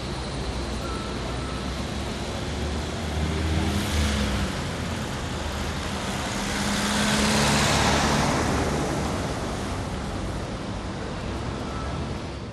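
Street traffic noise: a steady hum of passing road vehicles, with one vehicle going by about four seconds in and a louder one passing around seven to eight seconds in.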